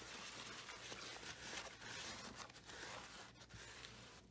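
Faint rustling and rubbing of a paper towel, folded in the hands and wiped across a stained MDF tag to lift off excess distress stain.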